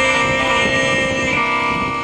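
Live rock-and-roll band playing, with guitar to the fore over bass and drums.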